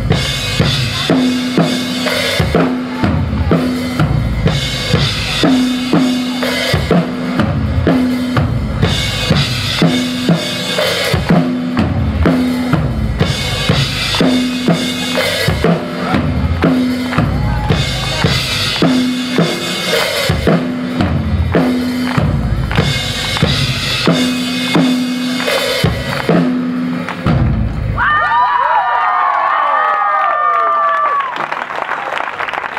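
Live rock band playing loud, led by a drum kit with kick drum, snare and cymbals hitting hard over a repeated low note. Near the end the drumming stops, and high gliding tones carry on.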